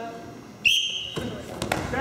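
Referee's whistle blown once, a short high-pitched blast of about half a second, starting the wrestling from referee's position. It is followed by thuds and scuffling of the wrestlers on the mat.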